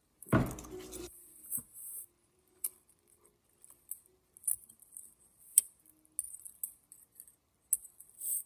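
A person taking a mouthful of instant noodles off a fork, a short noisy slurp about a third of a second in, followed by scattered light clicks and clinks while she chews.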